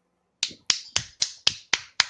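A steady run of sharp snaps, about four a second, beginning a little way in.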